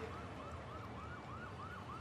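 A faint siren in the background, its pitch rising and falling quickly, about three times a second, in a yelping pattern.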